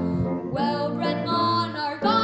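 A boy singing a solo with grand piano accompaniment.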